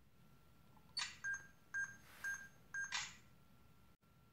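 Panasonic Lumix FZ300 bridge camera taking a Post Focus shot: a sharp click, four short electronic beeps about half a second apart, then a second click.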